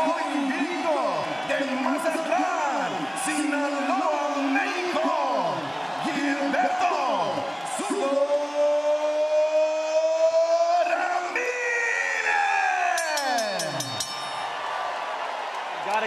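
Boxing ring announcer calling out a fighter's name in long, stretched syllables over a cheering arena crowd, ending on a note held for about three seconds that then slides down in pitch.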